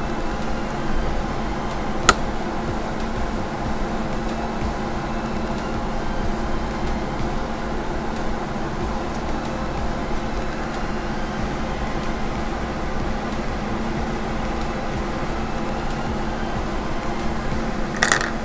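Steady background hum and hiss, like an air conditioner or fan running, with a single sharp click about two seconds in.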